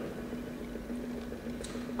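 Room tone: a steady low hum over a faint hiss, with two faint ticks in the second half.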